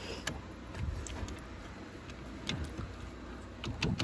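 A few faint clicks and small knocks from hands and locking pliers working at the ignition switch housing on the steering column, over a low steady hum.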